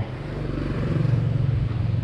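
BMW S1000RR's inline-four engine idling steadily, a little louder after the first second.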